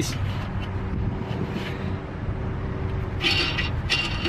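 Steady low rumble with a faint steady hum, like a vehicle engine running nearby. A short run of light metallic clicks comes about three seconds in, as lock nuts are worked down the threaded rod of a rear helper-spring assembly.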